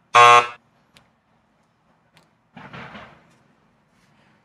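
Electric answer buzzer on a game board sounding once, a harsh buzz of about half a second as the button is pressed. A softer, noisy sound follows about two and a half seconds in.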